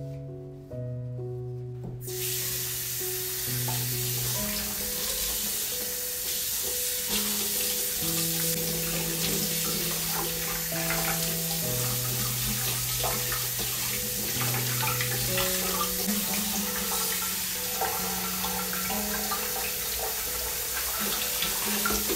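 Kitchen tap running into a stainless steel sink as dishes are washed by hand, with scattered clinks of dishes; the water comes on about two seconds in.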